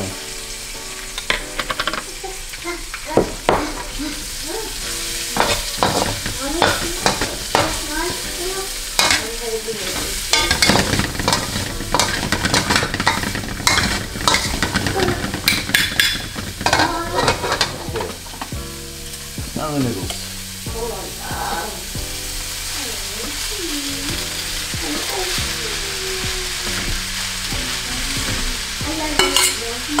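Minced garlic and vegetables sizzling in hot oil in a wok, stirred and tossed with a metal wok spatula that scrapes and clanks against the pan again and again, most busily around the middle.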